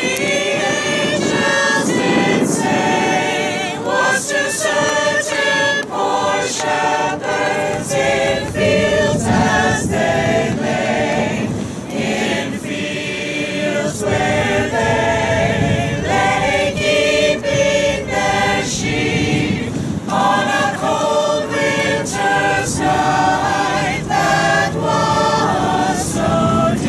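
A mixed choir of men and women singing a Christmas carol together, in continuous phrases with short breaths between them.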